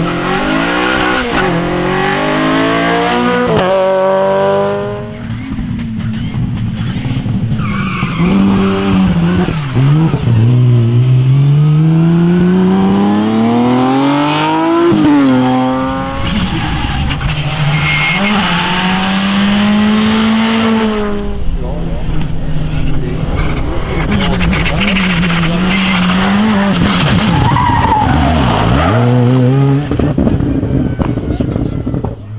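Rally cars passing one after another at full throttle, among them a Renault Clio, an older BMW 3 Series and a Škoda Fabia, their engines rising in pitch through each gear with breaks at the gear changes. Tyres skid on the loose surface as they go by.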